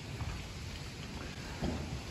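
Faint shuffling of cattle moving over straw bedding, over a low steady rumble.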